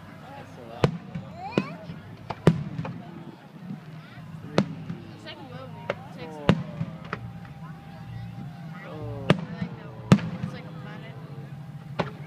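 Aerial fireworks shells bursting: about seven sharp bangs at uneven intervals, the loudest about two and a half seconds in and about ten seconds in.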